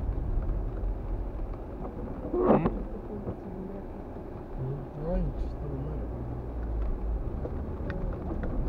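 Low, steady rumble of a car heard from inside the cabin as it drives on a wet road, with a short louder sound about two and a half seconds in and faint voice-like murmurs around the middle.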